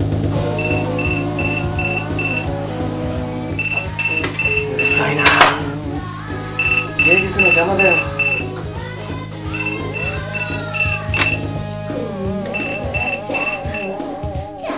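A mobile phone ringing with an electronic ringtone of short high beeps, about five or six to a burst; each burst lasts about two seconds and comes every three seconds. Music plays underneath.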